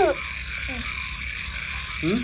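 A steady outdoor night chorus of croaking frogs, running on under a pause in the talk.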